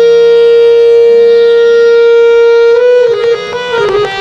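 Harmonium playing a melody: one long reedy note held for nearly three seconds, then quick short notes resume near the end.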